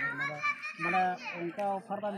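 Speech: people talking, a man's voice most prominent.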